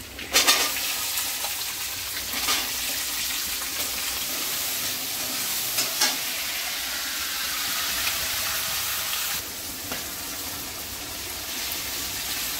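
Food frying in hot oil in a pan: a steady sizzle that starts abruptly about half a second in, with a few sharper spits and crackles. It drops a little for the last couple of seconds.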